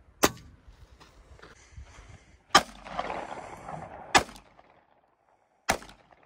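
Four separate gunshots at target practice, each a single sharp crack, spaced about one and a half to two seconds apart.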